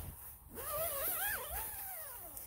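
A high, wavering whine that rises and falls in pitch for about a second and a half, starting about half a second in: an animal whining.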